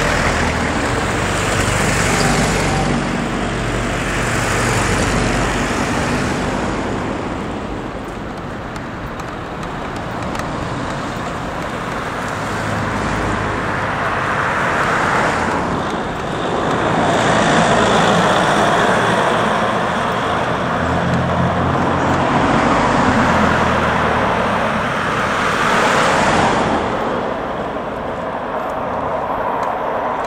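Street traffic: a series of cars and vans pass close by one after another, each swelling and fading, over a steady background of road noise.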